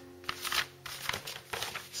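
Printed paper instruction sheet rustling and crinkling in a few short bursts as it is handled and shifted by hand.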